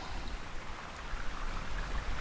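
Steady background noise, an even low hiss with a faint rumble and no distinct events.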